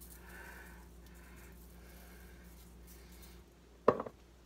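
Garlic powder shaken from a spice shaker: four or five soft shakes, then a sharp click near the end.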